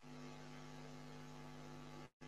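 Faint, steady electrical hum over a light hiss, picked up by an open microphone on a Discord voice call.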